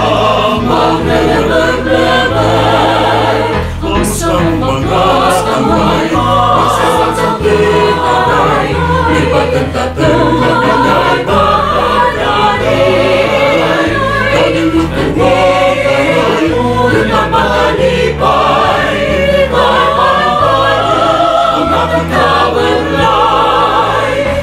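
Music: a song sung by a choir of voices over instrumental accompaniment, with a bass line stepping from note to note about once a second.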